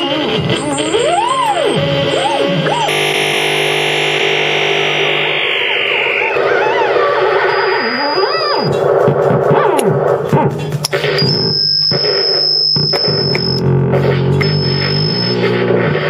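Electronic noise music from the Soniperforma video-sonification instrument, which turns the performer's hand movements into sound, layered with other electronics. It runs as rising and falling pitch arcs over dense layered drones, with a thick band of many tones from about three to six seconds in and a high steady tone from about eleven to thirteen seconds in.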